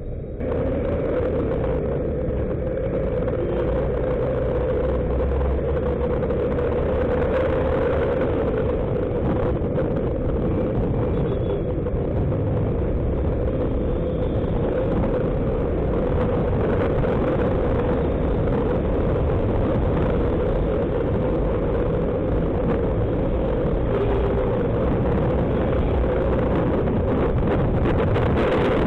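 Suzuki Burgman scooter under way in traffic: steady wind noise on the microphone over the scooter's running and road rumble.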